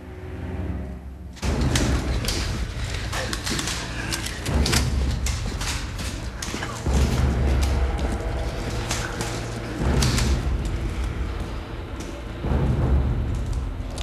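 Dramatic film score: a heavy low boom hits about every two to three seconds under a dense sustained bed, with sharp percussive hits over it.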